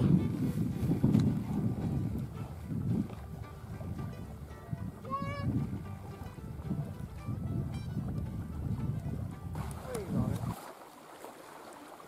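Wind buffeting the camera microphone on an open shore: a low, uneven rumble that rises and falls, then drops away abruptly about ten seconds in.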